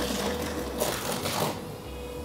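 Hissing, burning noise of a tapping lance worked into the tap-hole of a silicon smelting furnace, surging twice, over a steady hum of plant machinery.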